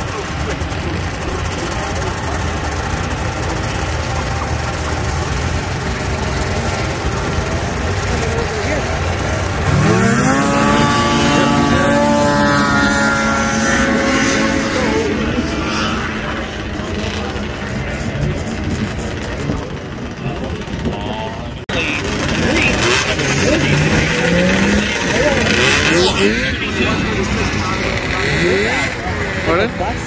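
Vintage two-stroke snowmobile engines idling at a drag-race start line, then revving hard about ten seconds in, their pitch climbing steeply as the sleds launch and accelerate away. The sound breaks off suddenly about two-thirds of the way through, and more snowmobile engines rev and climb in pitch after it.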